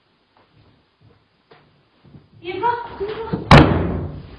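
A woman's high-pitched cry of fright, then about a second later a single loud bang like a slam, the loudest sound, with a short ringing tail.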